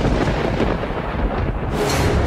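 A loud, thunder-like rumble with a deep low boom: a dramatic sound effect in a TV drama's soundtrack. A second, brighter burst comes near the end.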